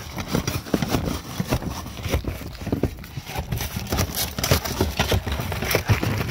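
Footsteps on an asphalt-shingle roof: a run of irregular knocks and scuffs over a steady low rumble.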